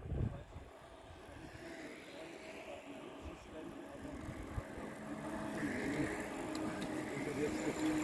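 A long column of bicycles approaching, the hum of their tyres on asphalt growing steadily louder, with riders chatting faintly among themselves.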